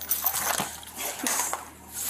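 A young child whimpering: two short, upward-gliding whiny cries, about half a second and a little over a second in.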